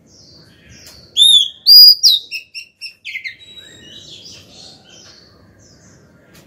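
Female oriental magpie-robin singing: two loud, clear whistles that arch down in pitch about a second in, then a quick run of short high notes and softer twittering that fades out by about five seconds.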